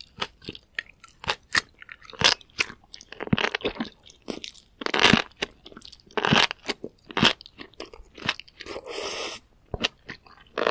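Close-miked chewing of a mouthful of sauced enoki mushrooms: a rapid, irregular run of wet crunches and mouth smacks, with one longer, steady sound near the end.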